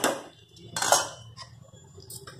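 Metal spatula clanking against a steel kadai while a brinjal mixture is stirred: a sharp clank at the start and a louder clatter about a second in.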